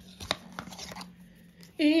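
Small paper gift box being opened by hand: card flaps unfolding with a few crisp crinkles and taps in the first second, then quieter handling as the item inside is lifted out. A woman starts speaking near the end.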